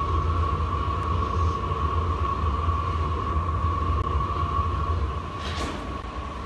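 Glass furnace and glory hole gas burners with their blowers running: a steady low rumble with a constant hum over it. A short hiss near the end.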